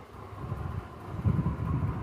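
Low, muffled rumbling and rubbing of a handheld phone's microphone being moved about against a blanket, swelling a little past the middle.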